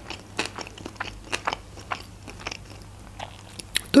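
Close-up chewing of a mouthful of sushi rolls: irregular soft wet clicks and small crunches from the mouth, a few each second.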